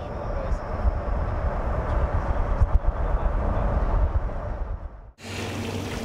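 Road noise of a moving car, heard from inside: a steady low rumble of tyres and engine with a rushing hiss above it. It cuts off abruptly about five seconds in.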